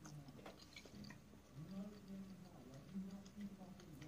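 A person quietly chewing a mouthful of fettuccine, with small mouth clicks and a few soft closed-mouth 'mm' hums in the second half.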